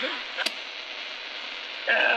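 Steady AM radio hiss from the Tiemahun FS-086's small speaker, tuned to a distant AM talk station, heard in a gap in the broadcast talk. There is one sharp click about half a second in, and the station's voice comes back near the end.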